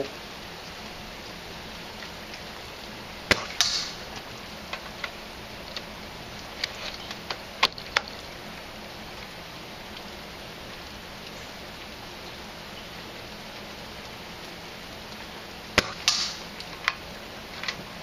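Snow Wolf VRS-10 spring-powered airsoft bolt-action sniper rifle, upgraded with an all-metal spring guide and piston, firing three sharp shots spread over several seconds. Quieter clicks fall between the shots. Twice a short ringing impact follows about a third of a second after the shot, as the BB strikes the target.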